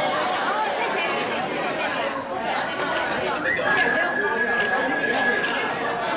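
Many people talking at once around a table, a lively overlapping chatter. About halfway through, a steady high whistle-like tone comes in and holds.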